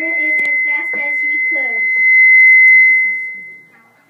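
Feedback from a PA loudspeaker: a steady, high-pitched ring that sounds under children's voices, swells to its loudest about two to three seconds in, then dies away near the end.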